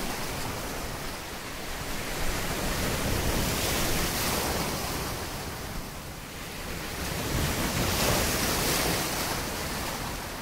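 Ocean surf sound effect: a rushing wash of waves that swells and ebbs in slow surges every few seconds.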